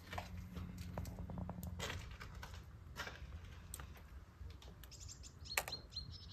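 Faint outdoor ambience with a low steady hum, scattered faint clicks and a few small bird chirps, one higher chirp near the end.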